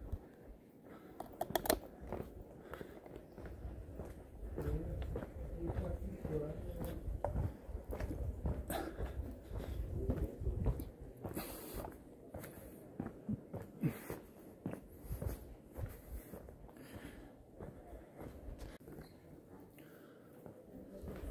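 Footsteps and camera-handling noise from someone walking with a hand-held camera, irregular soft clicks and rumbles, with faint voices in the background.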